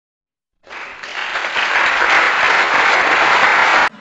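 A crowd applauding, swelling over the first second, then cut off abruptly just before the end.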